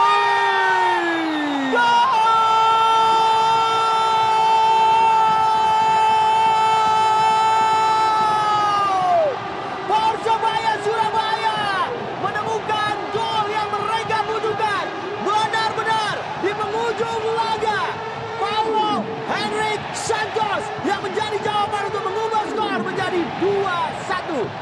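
Television commentator's long, drawn-out goal call held for about nine seconds, stepping up in pitch about two seconds in and falling off at the end, over stadium crowd noise. Fast, excited shouted commentary follows.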